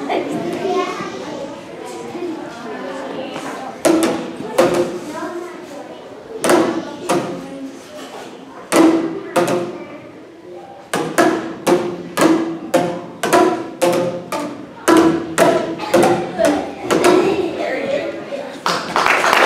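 Boomwhackers, tuned plastic tubes, struck a few times with gaps, then in a steady beat of about two hits a second from about the middle on. Each hit has a short ring.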